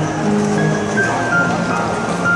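Yamaha grand piano being played, held notes and chords in an unhurried melody, each lasting about half a second, with background voices underneath.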